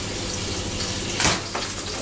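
Sea bass fillet frying in olive oil in a hot non-stick pan: a steady sizzling hiss, with a brief click about a second in.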